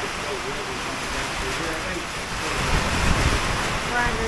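Hurricane wind and rain: a steady rushing hiss, with gusts buffeting the microphone and growing louder from about two and a half seconds in.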